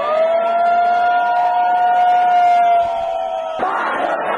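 A loud, sustained siren-like wailing tone that holds steady with a slight rise in pitch, then cuts off abruptly about three and a half seconds in, when a crowd's shouting takes over.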